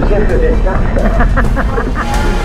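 Speech over a steady low rumble of wind on the microphone of a moving bike camera.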